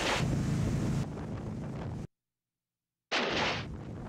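Water splashing and rushing spray with wind buffeting the microphone, from a wakeboarder crashing and being towed through the water. The sound drops out completely for about a second midway, then comes back with a sudden rush of spray.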